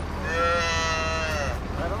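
A Jersey dairy calf bawling once: one drawn-out call a little over a second long.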